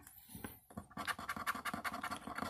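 A coin scraping the latex coating off a scratch-off lottery ticket. Quick, repeated strokes start about halfway in.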